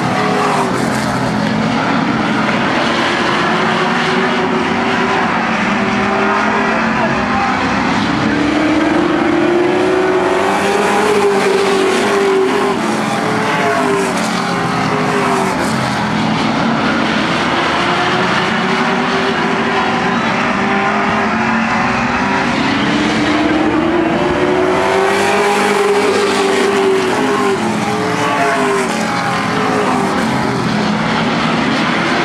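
Late model stock car V8 engines racing on a short oval track. The engine pitch rises and falls as the field laps, swelling loudest as the cars pass about ten seconds in and again about twenty-five seconds in.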